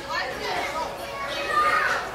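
Several high-pitched voices chattering and calling at once, overlapping, with no single voice standing out.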